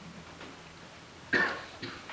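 A person coughing: one sharp, loud cough a little past halfway, with a shorter second burst just after.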